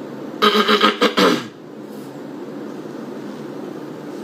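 A man's short laugh, a quick run of voiced pulses about half a second in that lasts about a second, over a steady low background hum.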